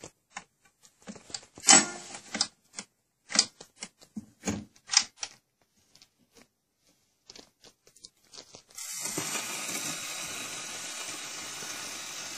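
Gramophone soundbox and tonearm being handled: a run of irregular clicks and knocks, the loudest about two seconds in. About nine seconds in the needle is on the spinning 78 rpm shellac record, and a steady surface hiss from the lead-in groove plays before the music starts.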